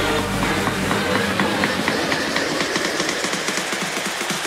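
Background electronic music in a breakdown: the bass drops out about half a second in, leaving a hissing passage full of fast ticks.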